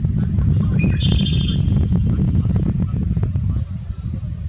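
A red-winged blackbird gives one short buzzy call about a second in, over a loud low rumble with crackling that fades near the end.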